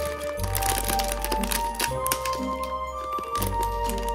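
Background music, with the crinkling of a foil blind-box bag being torn open and handled.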